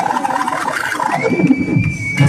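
A high-pitched, whinnying laugh with falling pitch, followed by a single held high tone in the second half.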